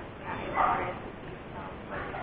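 A woman talking, faint and muffled as picked up by an action camera's microphone, in one short burst about half a second in.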